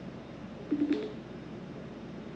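A short two-note tone from a phone, the second note higher, lasting about a third of a second about three-quarters of a second in, as a call is placed or cut off.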